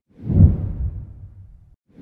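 Deep whoosh sound effect of an animated logo intro: it swells within half a second and fades out over about a second. A second whoosh starts right at the end.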